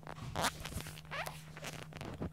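Several short rasping, rubbing sounds over a steady low hum.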